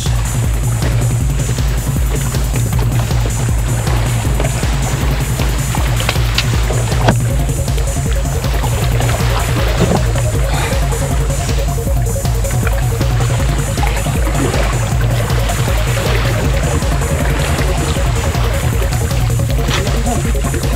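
Background electronic music with a steady, driving beat.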